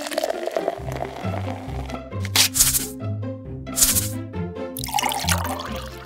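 Bouncy background music with a repeating, stepping bass line. Twice, about two and four seconds in, comes a short hissing pour sound as a toy coffee airpot is pumped.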